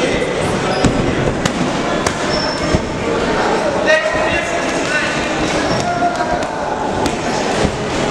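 Voices shouting over a noisy crowd in a sports hall, with several sharp thuds of gloved punches and kicks landing during a kickboxing exchange; the loudest thud comes about four seconds in.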